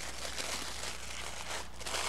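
Tissue paper crinkling and rustling as it is unfolded and pulled open by hand.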